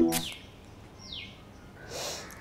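A short hiss from a perfume atomiser sprayed once just after the start, over the last notes of piano music. A single falling bird chirp about a second in.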